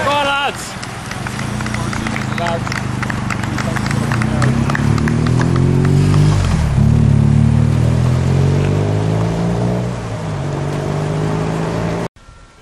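A bunched road-race peloton passing close, with rapid clicking and tyre hiss, while a motorcycle engine rises in pitch as it accelerates, drops briefly about two-thirds of the way through and rises again. A voice shouts right at the start.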